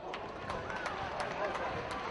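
Voices shouting and calling out at a football ground during play, with a few sharp knocks.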